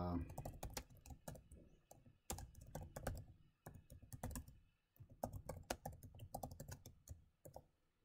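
Typing on a computer keyboard: quick runs of faint key clicks with brief pauses between them.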